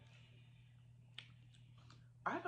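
Near silence over a steady low hum, with a faint click about a second in and two fainter ones near the end: a metal spoon scraping and tapping in a pint carton of ice cream.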